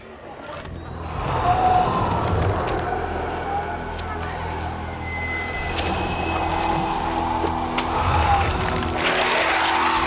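Orchestral film score of sustained low notes under a dense rushing noise of sound effects, swelling sharply about a second in and staying loud.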